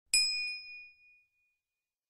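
Notification-bell ding sound effect for clicking the bell icon: a single bright ding with a click at its start, ringing out and fading over about a second and a half.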